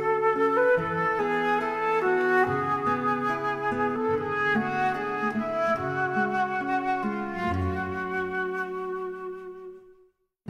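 Background instrumental music led by a flute melody, fading out near the end.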